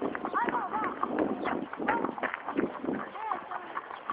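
Horse's hooves clip-clopping on a concrete path, with voices talking in the background.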